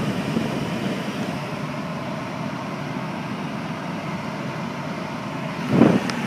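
Steady rushing of a 2007 Ford Taurus's air-conditioning blower running, heard inside the cabin, with a brief thump near the end.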